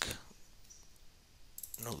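A few quick computer mouse clicks near the end, selecting text on screen, after a quiet pause.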